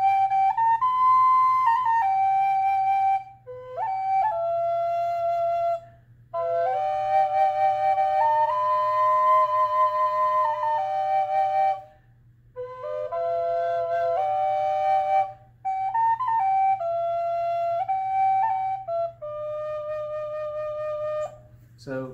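Small wooden Native American drone flute (a backpack drone) played: a slow melody on one chamber over a held drone note from the second chamber. It comes in phrases of a few seconds, with short breath pauses between them.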